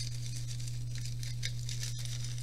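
Soft, irregular rustling and crinkling of a cigarette rolling paper being handled, over a steady low electrical hum.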